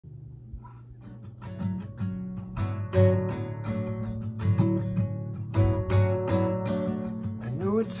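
Classical guitar fingerpicked as a song intro: single plucked notes and chords ring over a low bass line. It starts soft and fills out after about a second. A man's voice slides in to start singing right at the end.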